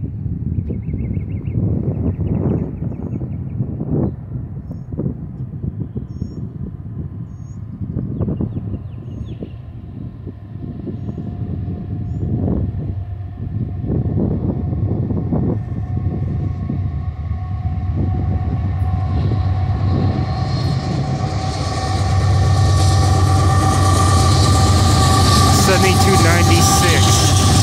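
Approaching Union Pacific freight train led by several diesel locomotives, its engine rumble and wheel-on-rail noise growing steadily louder and peaking as the locomotives pass near the end.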